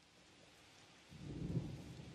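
Faint storm sound effect: a rain-like hiss with a low rumble of thunder swelling up about a second in.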